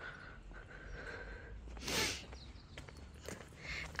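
Faint outdoor ambience with a low rumble while walking, broken about halfway through by a short breathy burst close to the microphone.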